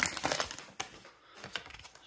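Plastic trading-card pack wrapper crinkling as it is pulled open and the cards slid out: a quick run of crackles at the start, then fainter rustling with a single click about a second in.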